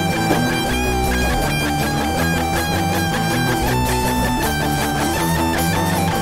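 Punk rock band playing an instrumental passage: strummed electric guitars and bass guitar in a fast, even rhythm, with a held guitar note that steps up in pitch about four seconds in.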